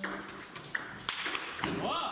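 Table tennis ball clicking off the bats and table during a rally, a few sharp strokes in the first second and a half. A voice calls out near the end as the point ends.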